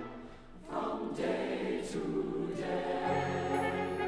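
Large mixed choir singing, coming in about a second in as the loud passage before it dies away; a low held note sounds beneath the voices near the end.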